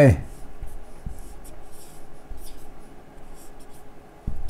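Marker pen writing on a whiteboard: a run of short, faint strokes.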